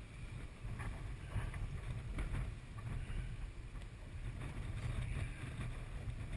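Wind rumbling on the microphone: a steady low buffeting with a few faint taps.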